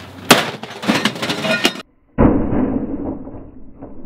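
A microwave oven hits a concrete slab after a 35-foot drop: one loud crash with glass breaking and debris clattering for about a second and a half. After a brief silence a muffled, steady rushing noise runs until near the end.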